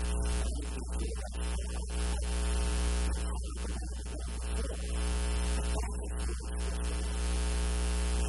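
Loud, steady electrical mains hum and buzz on the recording, a low drone with a long series of overtones, masking the room sound.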